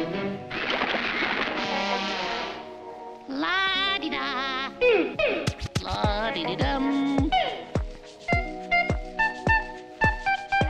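Cartoon music score with comic sound effects. A hissing spray of water from a hose runs for about two seconds. It is followed by a wavering warble, a few quick falling slides, and then evenly spaced plucked notes over low thumps near the end.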